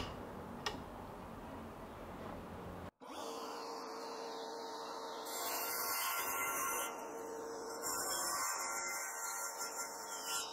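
DeWalt jobsite table saw cutting through an aluminum angle profile: a steady motor hum with a rasping hiss that swells twice as the blade bites into the metal. A couple of short clicks come before it.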